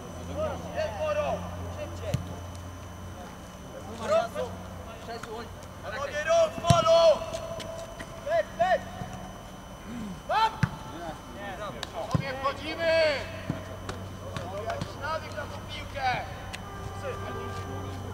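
Football players shouting short calls to each other during play, with a few sharp single thuds of the ball being kicked. The shouting is loudest about six to seven seconds in.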